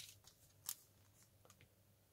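Near silence, broken by one short, faint plastic click about two-thirds of a second in, and a fainter tick later, as white gel pens and their plastic packet are handled.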